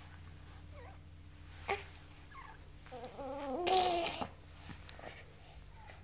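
A baby's short strained, whiny vocal sound lasting about a second, about three seconds in. It bends up and down in pitch and carries breathy noise. A single short click comes shortly before it.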